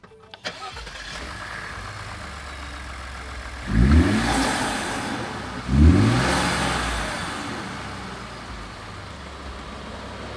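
Cold start of a 2018 Ford F-150's 2.7L twin-turbo EcoBoost V6 fitted with a K&N cold air intake: it catches about half a second in and settles into a steady idle. It is then revved twice, about two seconds apart, and each rev falls back toward idle.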